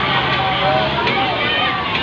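Fairground hubbub: many voices overlapping, with high children's shouts and calls. A steady low engine hum runs underneath and fades out about a second and a half in.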